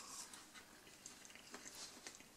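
Faint chewing of a mouthful of microwave-heated breaded chicken schnitzel: soft, scattered little clicks and mouth noises.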